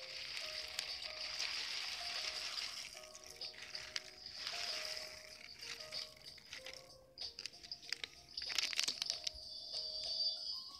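Barley grains poured from a plastic bag into a rice cooker pot of water, pattering and hissing as they fall, with the bag crinkling and a louder clatter of grains and plastic about eight and a half seconds in. Soft background music plays underneath.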